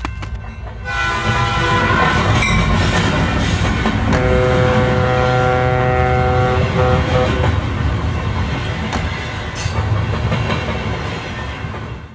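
Train rumbling past with its multi-tone horn sounding, first briefly about a second in, then held for about three seconds in the middle, over a steady low rumble.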